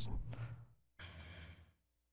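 A man's short sigh into a close podium microphone about a second in, a soft breath lasting about half a second after the fading tail of his last words.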